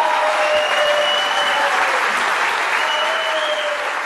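Audience applauding steadily just after the music has ended, with a few drawn-out cheers over the clapping.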